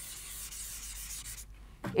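Chalkboard duster wiping chalk off a chalkboard: a soft, steady dry rubbing that stops abruptly about one and a half seconds in.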